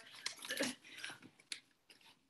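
Faint crinkling and small clicks of a paper letter being handled and unfolded, with one sharper click about a second and a half in.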